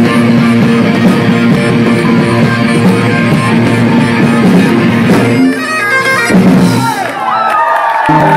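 Live rock band with electric guitar, drums and Highland bagpipes playing together loudly. About five and a half seconds in the full band drops out, leaving a few sustained notes, and whoops and cheers rise near the end.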